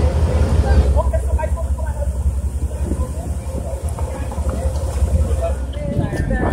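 A steady low rumble with people talking faintly over it.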